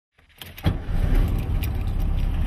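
Car engine starting: a few clicks, then the engine catches abruptly about two-thirds of a second in and settles into a steady idle with an even low pulse.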